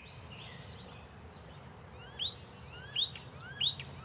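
Wild birds singing: a fast, high trill falling in pitch near the start, then a run of short rising chirps about every half second in the second half.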